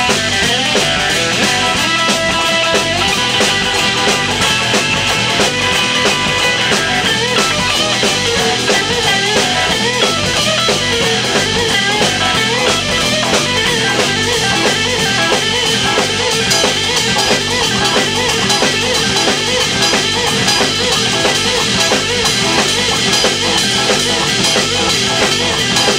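Live blues-rock band playing an instrumental passage with no vocals: a Stratocaster-style electric guitar playing a lead line over a steady drum kit beat and bass.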